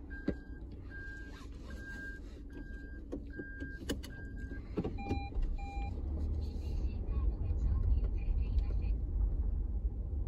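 Car's in-cabin electronic chime beeping six times at an even pace, followed by two lower beeps. Then comes the low rumble of the car as it moves off, getting louder near the end.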